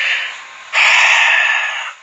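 A man's breathing: a quieter drawn breath, then a loud, long breathy exhale of about a second, like a heavy sigh.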